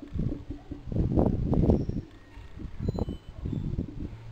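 Marker pen writing on a whiteboard: a run of irregular scratchy strokes, loudest between about one and two seconds in, with a few more near the end.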